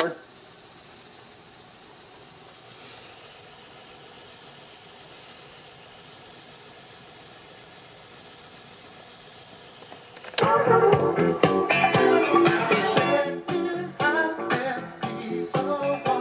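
Cassette mechanism of a 1991 Sony Mega Watchman fast-forwarding a tape, a faint steady whir. About ten seconds in, rock-and-roll music from the cassette starts playing loudly through the set's speaker.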